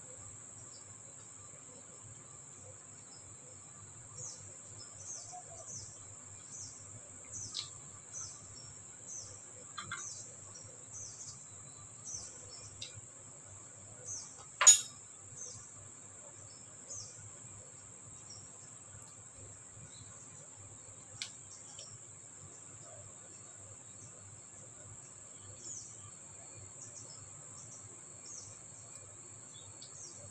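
Quiet eating by hand: small mouth smacks and clicks of chewing, scattered through the first half, with one sharp click about halfway through. A steady high-pitched whine runs underneath.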